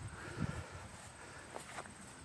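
Quiet outdoor background with a few soft low thumps, one about half a second in and a couple near the end.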